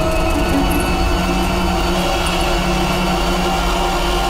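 Tense background music: long held notes over a deep, steady low rumble.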